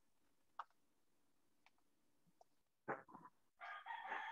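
Near silence: room tone with a faint click about half a second in. Near the end come brief, faint voice sounds.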